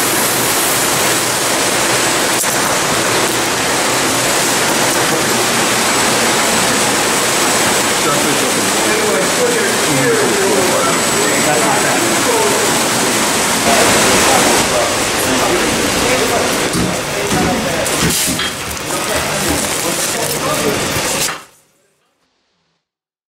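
A loud, steady rushing noise, like running water, with indistinct voices faintly underneath. It cuts off abruptly near the end.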